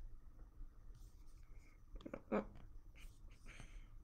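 Quiet room tone with faint rustling and a few small clicks of handling, including one brief, slightly louder short sound a little past halfway.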